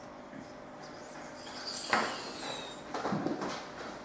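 A quiet first half, then a man's disgusted gasps and gagging noises at the smell of a glass of vinegar and milk, mixed with squeaky stifled laughter, starting about halfway through.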